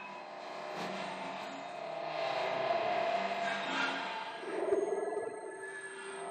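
Acousmatic electroacoustic music: a dense, shifting layer of processed sound with many held tones, swelling toward the middle. A thin, steady high tone enters about two-thirds of the way through, and a trembling, warbling cluster follows near the end.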